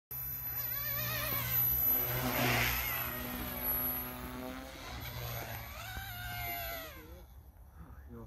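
Small radio-controlled model helicopter flying: rotor buzz and motor whine rising and falling in pitch as the throttle changes, fading about seven seconds in as it climbs far away.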